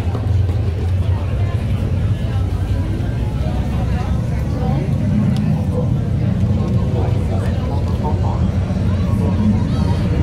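Crowd chatter, many voices blending, over a steady low rumble.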